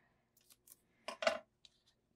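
Non-stick craft scissors cutting foam tape: a few faint clicks, then one louder snip a little past a second in.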